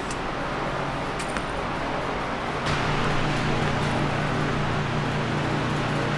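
Steady air noise of a large shop floor fan running, with a low steady hum that comes in about two and a half seconds in.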